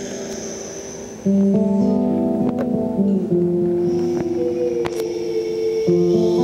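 Nylon-string classical guitar played solo: a chord rings and fades, then about a second in a louder phrase of plucked notes begins, with one note sliding down in pitch near the end.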